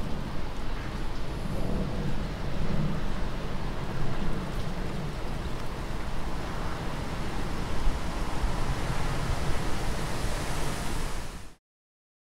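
A steady rushing noise like surf or wind, with no clear tones, that cuts off abruptly near the end.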